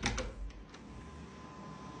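Door latch clicking as a lever handle is turned and the door pulled open. This is followed by a steady low machine hum with a faint thin whine, from a dehumidifier running beyond the door.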